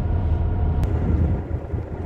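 Fishing boat's engine running with a steady low rumble, which weakens about a second and a half in.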